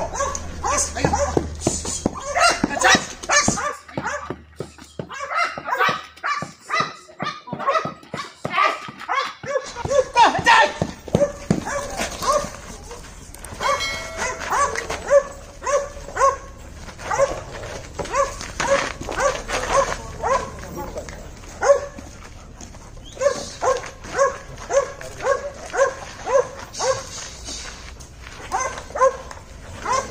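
Belgian Malinois barking during bite-sleeve protection training, the barks coming in long runs of about two a second with short breaks between runs.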